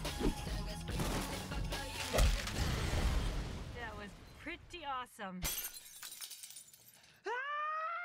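Film trailer mix: music under a loud crash about two seconds in, with a noisy rumble that dies away over the next two seconds. Short vocal exclamations follow, and there is a sudden cry near the end.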